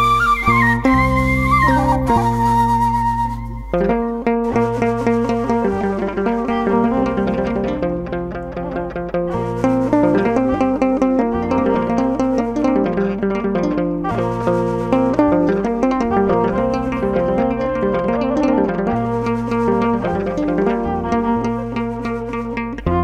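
Instrumental background music: a gliding flute-like melody for the first few seconds, then a steady, repeating plucked-string pattern over a low bass line.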